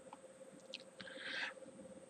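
Quiet pause in a microphone recording: a faint steady electrical hum, a couple of faint clicks, and a soft hiss lasting about half a second, about a second in.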